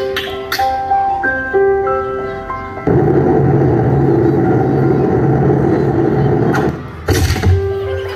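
Recorded backing music with a simple chiming melody. About three seconds in, it gives way to a loud rushing noise with a low hum that lasts about four seconds. A sharp hit follows, and the melody comes back near the end.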